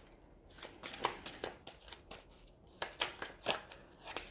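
Tarot cards being handled: a run of short, crisp card snaps and rustles, starting about half a second in and coming irregularly, three or four a second.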